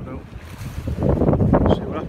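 Wind buffeting the microphone: a low rumble that grows louder about a second in.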